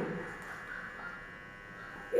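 Faint steady electrical buzz over small-room tone, with the tail of a woman's voice fading out at the start.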